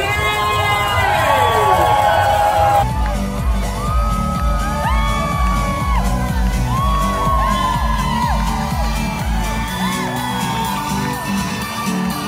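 Dance music with a heavy, steady bass beat playing from a parade float's sound system, with a crowd cheering and whooping over it.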